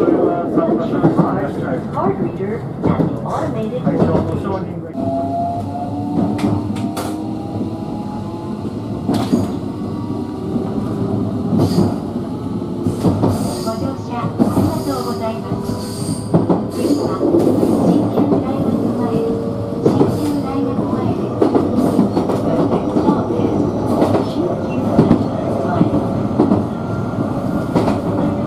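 Electric train heard from inside, near the front: a running rumble with wheels clacking over rail joints and turnouts. From about five seconds in, a motor whine rises slowly in pitch as the train picks up speed.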